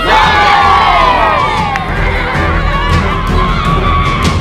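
A large group of children shouting together in a team cheer on the count of three: a loud collective yell that starts all at once and carries on as drawn-out shouting.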